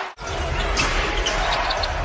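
Arena game sound: steady crowd noise with a basketball being dribbled on the hardwood court. A brief dropout at an edit cut comes just after the start.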